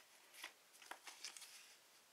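Near silence with a few faint papery rustles and clicks as a sticker is taken from the stack.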